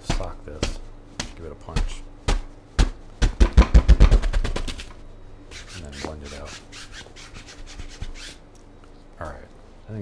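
Paintbrush striking and scrubbing oil paint on a stretched canvas, with the canvas giving hollow thuds. Separate taps come about twice a second, then speed into a quick run of loud thumps about three to four and a half seconds in, then lighter, faster strokes.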